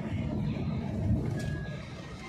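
Low, steady rumble of a vehicle driving slowly along a rough forest dirt road, heard from inside the cabin. A brief high whistle comes about one and a half seconds in.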